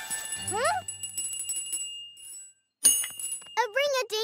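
A small bell rings with a high tone that fades over about two seconds, and a sharp ding follows about three seconds in. A cartoon character's voice rises in a quick whoop near the start, and voices exclaim near the end.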